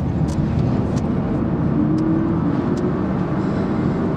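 Engine and tyre noise inside a Pontiac's cabin as the car accelerates away from an intersection onto a highway. It is a steady sound, with a faint engine tone rising slightly partway through.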